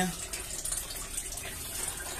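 Steady running water in an aquaponics fish tank, water flowing in through the system's pipe.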